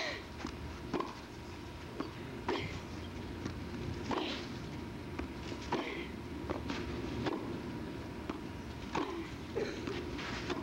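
Tennis ball being hit back and forth with rackets in a baseline rally: a sharp pock about every second or so, the loudest one right at the start, over steady broadcast hiss with a faint thin steady tone.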